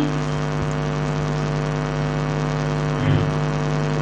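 Steady electrical hum from the microphone and sound system, a stack of unchanging tones with no rise or fall. A brief soft sound comes about three seconds in.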